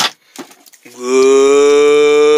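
A person's voice holding one long, steady, loud note, starting about a second in after a few faint ticks.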